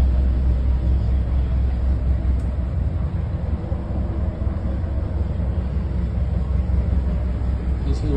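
Steady low drone of an engine running aboard a houseboat, heard from inside the cabins; it eases a little in the middle and strengthens again near the end.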